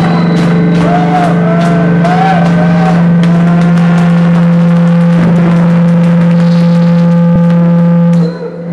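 Live improvised noise music: a loud, steady low drone with warbling, looping higher tones over it in the first few seconds and scattered crackling clicks throughout.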